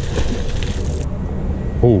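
A heavy fishing magnet splashing into pond water, the spray falling back as a hiss that stops about a second in, over a steady low rumble.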